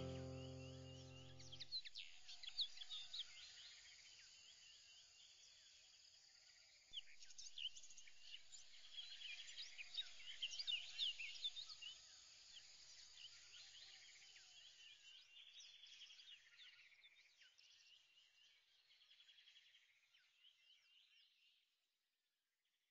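Faint chorus of many birds chirping and trilling, swelling about seven seconds in and fading out near the end. A few low music notes die away in the first two seconds.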